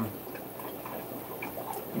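Steady background noise of a fish room full of running tanks, with faint ticking.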